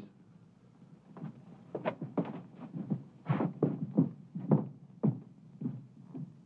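Footsteps of several people walking away across a hard floor, a dozen or so irregular soft thuds, over a steady low hum.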